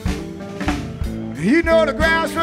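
Live blues band playing, with drum strokes and a note bent upward about one and a half seconds in.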